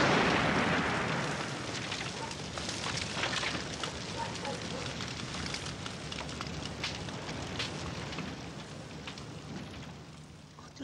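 A van burning in a petrol fire: the roar of the blast that set it alight is loudest at the start and dies down over the first few seconds into a steady crackling blaze with scattered pops.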